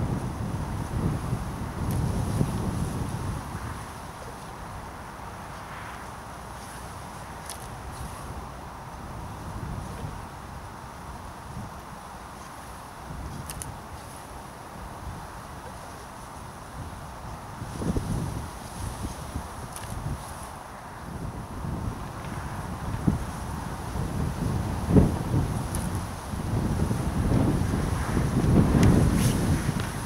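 Wind buffeting the microphone in gusts, a low rumble that is strongest in the first few seconds and again near the end, with a few faint clicks in between.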